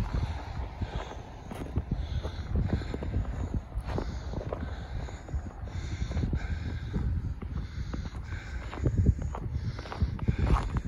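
Footsteps crunching through packed snow at a walking pace.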